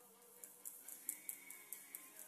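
Faint background music, with a quick, uneven run of light high-pitched ticks from about half a second in: a stylus tapping and stroking on a drawing tablet as white paint is added.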